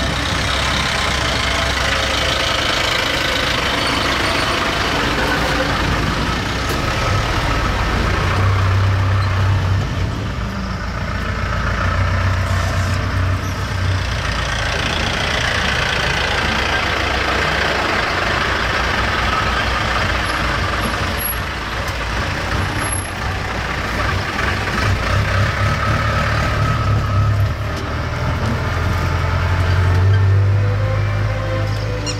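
Safari jeep engine running steadily as it drives along a dirt track, heard from on board. Another safari jeep's engine is close alongside partway through.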